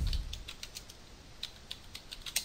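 Computer keyboard being typed on: a quick, irregular run of key clicks as a word is typed.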